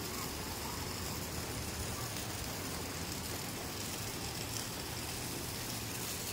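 Rain falling steadily, an even hiss with no separate drops or other sounds standing out.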